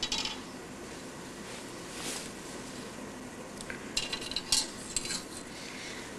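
A few light clinks and taps, most of them about two thirds of the way in, as a circular fluorescent tube is handled close to a transmitter's metal antenna rod, over a steady hiss.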